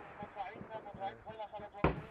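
Faint background voices with a few soft knocks, and one sharp knock just before the end.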